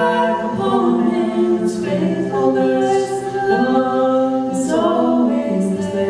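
A man's and a young woman's voices singing a slow worship song in harmony, holding long notes, with the voices far in front of any accompaniment.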